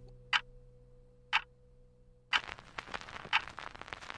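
A clock ticking about once a second over a faint low hum, with a hissy background coming in about two seconds in.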